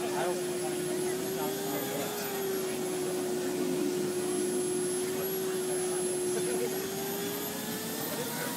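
Chrysler Turbine Car's A-831 gas turbine engine running with a steady whine over a rushing hiss, like a vacuum cleaner; the whine lifts slightly in pitch about two seconds in and again near the end.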